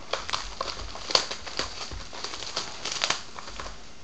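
Cellophane shrink wrap being torn off a sealed cardboard box of trading cards and crumpled in the hand: a run of irregular crinkling and crackling with sharper snaps.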